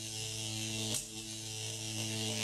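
Electronic glitch-and-static sound effect for a logo sting: a steady buzzing hum under a loud static hiss, with a short glitch break about a second in.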